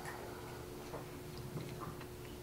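Quiet room tone with a faint steady hum and a few light, scattered clicks.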